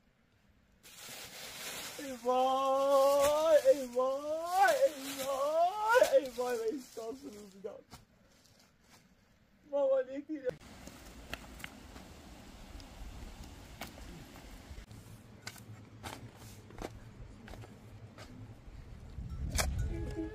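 A person's voice crying out without words in long wails that rise and fall in pitch for about five seconds, then one short cry about ten seconds in. After that comes only a faint steady background with scattered clicks.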